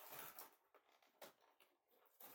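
A few faint crinkles of clear plastic packaging being pulled open by hand, the clearest about a second in.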